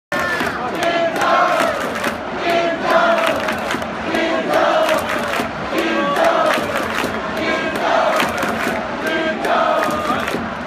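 A large baseball stadium crowd chanting together in rhythm, shouting in unison about once a second, with rhythmic clapping.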